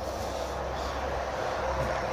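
Steady low rumble with a faint hiss of background noise. No distinct event stands out.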